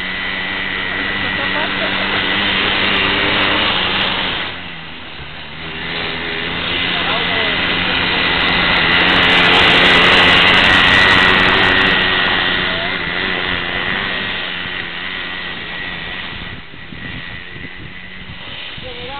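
Small engine of an off-road go-kart buggy running as it is driven around, growing louder as it passes close by in the middle and fading again toward the end, with a brief drop a few seconds in.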